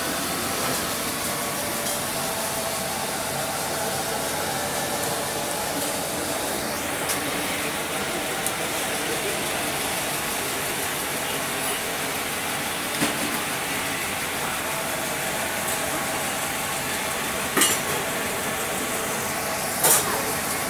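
Steady hiss of a street-food stall's kitchen around a dosa griddle, with a few sharp clinks of utensils in the second half.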